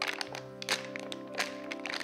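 A plastic water bottle being squeezed and crumpled in a child's hands, giving a run of irregular sharp crackles, over steady background music.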